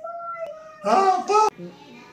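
A voice singing wordless syllables: a held note, then two short, loud sung syllables about a second in that cut off sharply.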